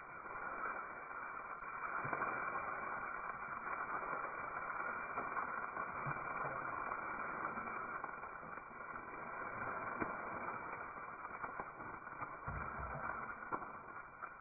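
Lemongrass, ginger and garlic sizzling steadily in hot oil in a stainless steel wok, with a few light scrapes and clicks of a metal spatula against the pan.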